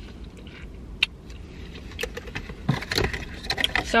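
Small objects being handled inside a car: a single sharp click about a second in, then a run of clicks, taps and rustles over the last two seconds, above a low steady rumble.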